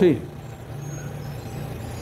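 A vehicle engine running steadily with a low hum, after a brief spoken "sí" at the very start.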